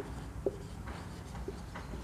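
Marker pen writing on a whiteboard: faint scratches of the tip with a few light taps as the words are written.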